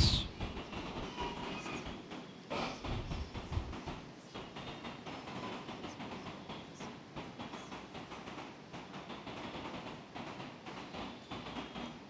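Faint shuffling, rustling and scattered knocks of a church congregation moving about as people exchange the sign of peace, with a few louder knocks about three seconds in.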